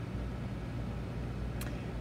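Steady low background hum, with a single faint click about one and a half seconds in.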